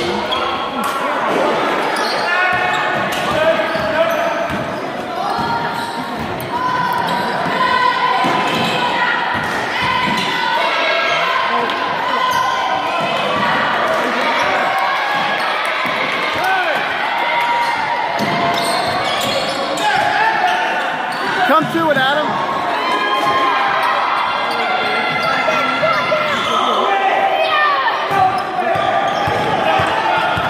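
Basketball bouncing on a hardwood gym floor during play, with many overlapping voices of players and spectators carrying through the large gym.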